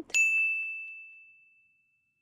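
A single bright 'ding' sound effect, a clear bell-like chime that rings and fades away over about a second and a half. It is the edited-in cue marking a 'yes' answer.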